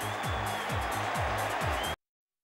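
Background music with a steady beat and repeated falling sweeps. It cuts off suddenly at the very end.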